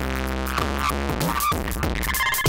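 Beat from a Dave Smith Tempest analog drum machine played through an Elysia Karacter saturation and distortion unit, the drums distorted and saturated. A deep pitched kick strikes at the start and again about a second and a half in.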